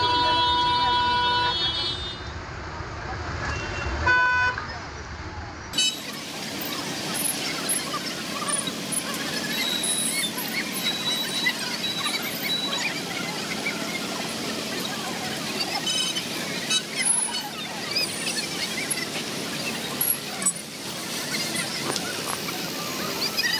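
A vehicle horn held for about two seconds, then a short second toot about four seconds in. After a cut, a steady hubbub of many voices and motorcycle engines from a traffic jam.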